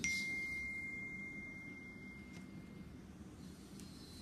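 A single high notification ding: one pure tone that starts suddenly and fades out over about two and a half seconds.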